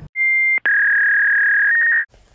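Electronic test-card tone like the one played over TV colour bars: a short high beep, a brief break, then a longer steady tone a little lower in pitch that steps up slightly near the end.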